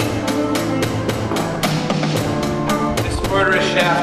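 Rock band playing a song with a steady drum-kit beat of about four hits a second under guitar and sustained notes; a sung voice comes in near the end.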